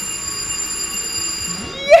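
Carousel's electric bell ringing steadily as the ride is switched on with its key at the control panel, cutting off just before the end.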